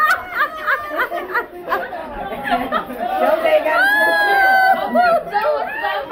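Several people talking, laughing and calling out over one another, with one long drawn-out call about four seconds in.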